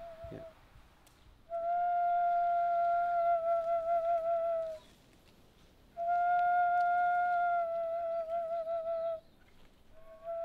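A Māori taonga pūoro flute playing two long held notes with a pause between. Each note is steady at first and then wavers near its end.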